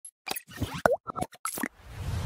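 Animated-intro sound effects: a quick run of short cartoon pops and plops, one with a sliding pitch, then a whoosh starting to swell near the end.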